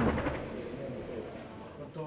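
Faint, muffled voices of people in a room, fading away over the first second and a half.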